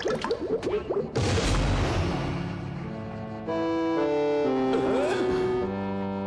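Cartoon sound effects of an inventor's glass-tubed contraption being run: a busy rattle, then a hissing burst with a low rumble about a second in. From about three and a half seconds a short music cue steps down through held notes, marking that the machine has failed.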